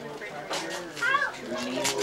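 Indistinct voices in a room, among them a young child's high voice, with no clear words.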